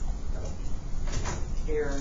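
Indistinct talking, with a short voiced stretch in the second half, over a steady low hum.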